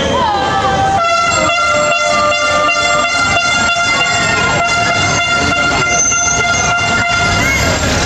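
A horn sounding one long, steady blast of about six seconds, starting about a second in, over the chatter of a crowd.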